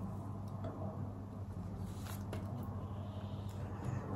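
A steady low hum under faint brush sounds, with a couple of light clicks about two seconds in as paintbrushes are laid down on the paint palette.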